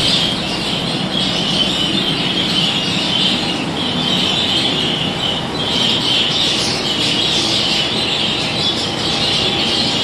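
A flock of budgerigars chattering continuously, a dense high twittering that swells and dips, over the steady noise of the aviary's ventilation fans.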